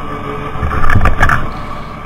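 Tractor engine and mower running steadily, with a louder burst of low rumbling and several knocks about a second in.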